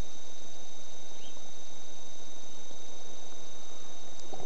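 Steady hiss with a constant high-pitched whine at two pitches, unchanging throughout.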